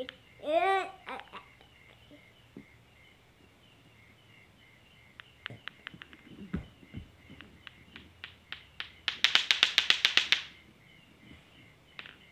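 Lato-lato clacker balls knocking together: a few single clacks that come quicker and quicker, then a fast run of about nine clacks a second for a second and a half that stops suddenly.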